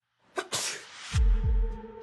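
A person sneezing once, sharply. Just after it comes a deep boom, the loudest sound, and a held music drone comes in and carries on.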